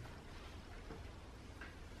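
Quiet room tone: a steady faint low hum with a light hiss.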